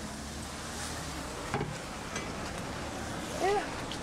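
Steady hiss of rain, with a short voice sound about a second and a half in and a brief rising-and-falling vocal sound, the loudest moment, near the end.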